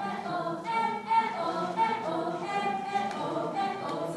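A group of voices singing a cappella, holding notes that step from pitch to pitch.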